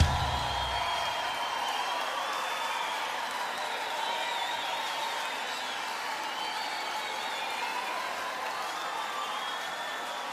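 Crowd applauding and cheering, with a few whoops, slowly fading after the song's last note dies away in the first second.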